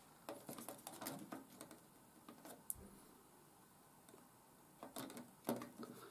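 Faint, sparse clicks and light rustles of hands handling a laser-cut card model and glue bottle while a glued corner is held in place, with a few small ticks early on, one near the middle and a few near the end; otherwise almost silent room tone.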